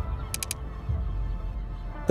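Background music with a low bass, three quick high ticks about half a second in, getting a little quieter toward the end.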